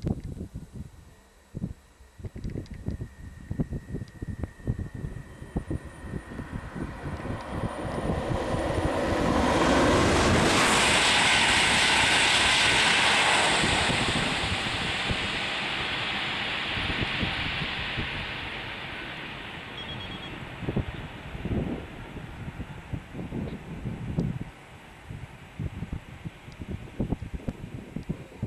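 A double-deck TGV test train passing on a high-speed line: a rushing roar builds, is loudest about 10 to 13 seconds in, then fades as the train runs away.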